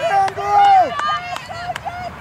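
High-pitched voices shouting and calling out with no clear words: one long held call in the first second, then several shorter ones.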